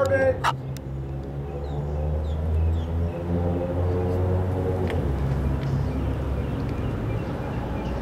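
A motor vehicle engine idling nearby: a steady low hum. Faint short chirps sound above it.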